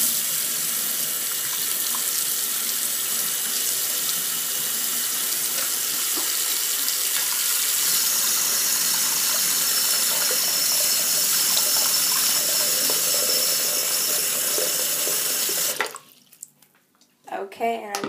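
Water tap running steadily into a sink basin, filling it with water, then turned off abruptly near the end.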